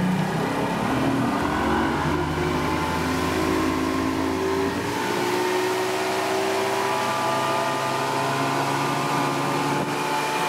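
Mercury 150 hp OptiMax two-stroke V6 outboard running hard on a high-speed run, its pitch rising slowly and steadily as the boat gains speed.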